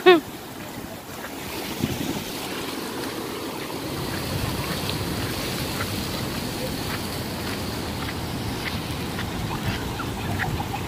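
Small ocean waves washing over a wet concrete walkway and surging along its sides, a steady rush of surf.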